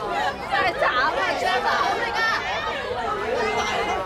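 Several voices talking and calling out at once, overlapping chatter from people at the side of a youth football pitch.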